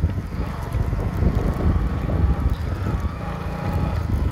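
Wind buffeting the microphone of a phone filming from a moving vehicle, with the vehicle's low rumble underneath; the noise is steady.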